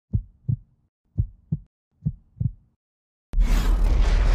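Heartbeat sound effect: three double thumps, lub-dub, about three-quarters of a second apart, with silence between. About three seconds in, a sudden loud hit breaks in and carries on as a deep, noisy swell, opening a logo intro sting.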